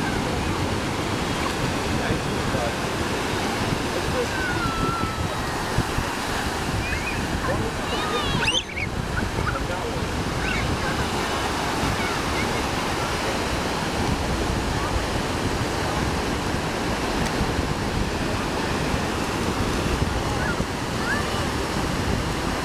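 Ocean surf breaking and washing up a sandy beach, a steady rushing wash, with wind on the microphone and a few faint children's shouts.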